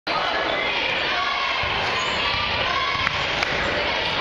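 Live basketball game in a gymnasium: a basketball bouncing on the hardwood floor amid the chatter and shouts of players and spectators, with a couple of sharp knocks a little past three seconds in.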